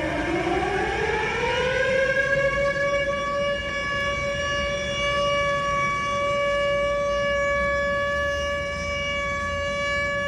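Mechanical siren with one pitched tone: its pitch dips, glides up over about two seconds, then holds a steady tone.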